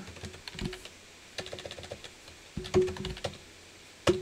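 Typing on a computer keyboard: two short runs of quick keystrokes, the second run longer.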